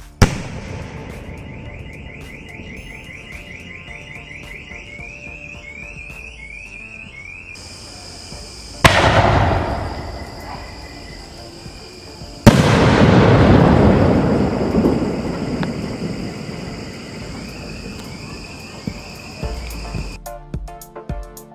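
Two 5-inch Golden Rain aerial shells from a skyshot box. The first bursts with a sharp bang right at the start, followed by a steady hiss of falling stars. About nine seconds in, the second shell is launched with a loud thump, and about three and a half seconds later it bursts with a louder bang, followed by a long, slowly fading hiss.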